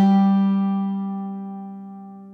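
Mandola's final note of an Irish reel: a single low plucked note left to ring, fading steadily away.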